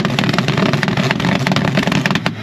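Car engine held at high revs on a two-step rev limiter, with a rapid, continuous crackle of pops over the engine note.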